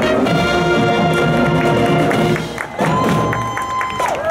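Marching brass band with sousaphones playing a march. The music breaks off about two-thirds of the way through, and one long high note follows.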